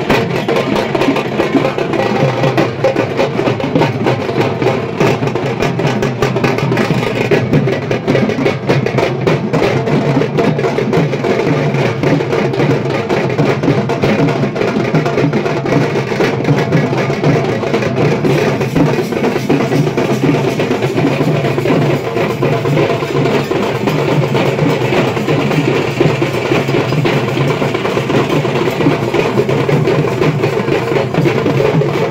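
Several dhaks, large Bengali barrel drums, are beaten together with thin sticks, along with smaller drums. The beat is fast and dense and keeps going without a break.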